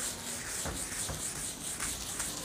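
A whiteboard being wiped clean of marker writing by hand, in quick repeated rubbing strokes.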